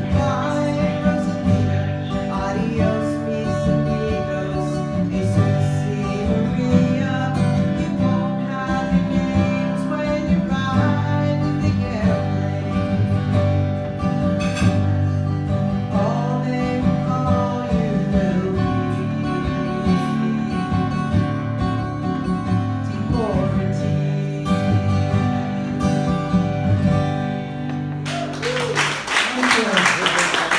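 A singer's voice with a strummed acoustic guitar: a folk song performed live.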